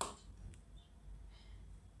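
Faint scraping of a spoon stirring thick urad dal batter on a ceramic plate, with a light click about half a second in.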